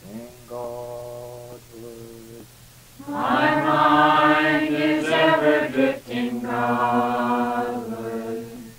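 Devotional chant sung in call and response: a single voice leads softly, then about three seconds in a group of voices answers, much louder and fuller, over a steady low hum.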